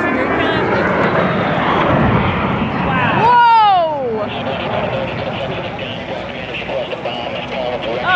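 A Fairchild A-10 Warthog jet passing, its twin turbofan engines' noise swelling to a peak about three and a half seconds in, with a whine that drops steeply in pitch as it goes by, then fading away.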